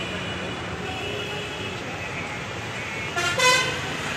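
Steady road-traffic hum, with a vehicle horn honking briefly about three seconds in.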